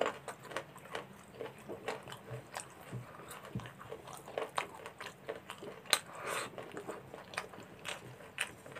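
Close-miked eating sounds of rice and chicken curry eaten by hand: irregular wet clicks and smacks of chewing, and fingers squelching rice into gravy on a steel plate. The sharpest click comes about six seconds in, followed by a brief hiss.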